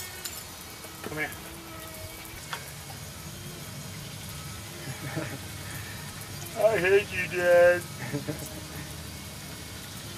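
A short pitched vocal call, sliding at first and then held for about a second, rises over a steady hiss about seven seconds in.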